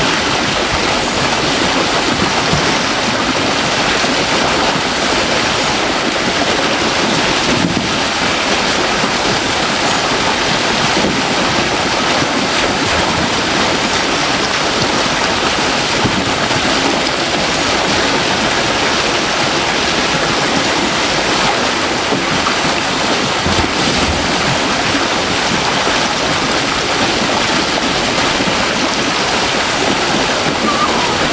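High water pouring over a weir sill into a channel, a steady loud rush with no let-up.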